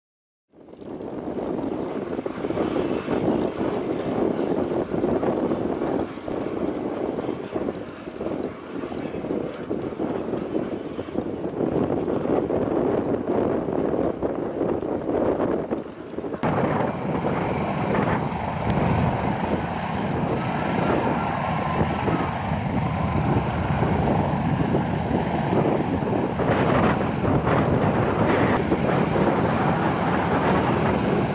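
A Yakovlev Yak-9U fighter's V12 piston engine and propeller running at low ground power as the aircraft taxis. The sound shifts abruptly about halfway through.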